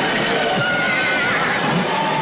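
Film battle sound effects: horses whinnying over galloping hooves in a steady, dense din of a cavalry charge.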